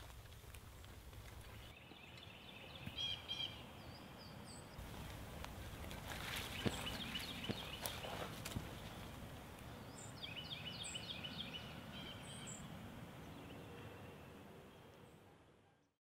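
Faint outdoor wildlife ambience: bursts of chirping animal calls, repeated short trills, come twice, with a few sharp clicks in between, then the sound fades out near the end.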